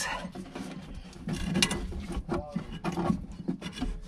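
Irregular metallic clicks and scraping of hands and a tool working at the fuel filler neck's bracket under the body, loosening the 10mm bolt that holds it.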